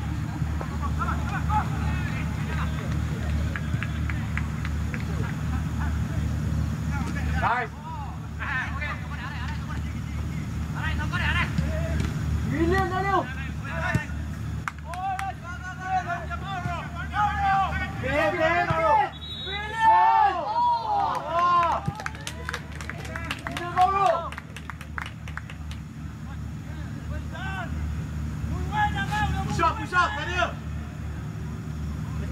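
Football players' shouts and calls across the pitch during play, bunched mostly in the middle of the stretch, over a steady low rumble.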